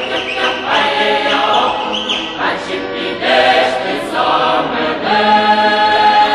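Choir singing a Ukrainian traditional folk song in several voice parts, holding a long steady chord near the end.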